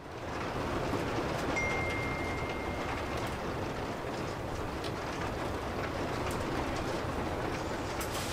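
A steady rumbling background noise sets in suddenly out of silence and runs on evenly, with a brief thin high tone about one and a half seconds in.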